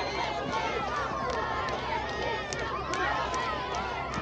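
Many children's voices chattering and calling out at once, overlapping so that no single voice stands out.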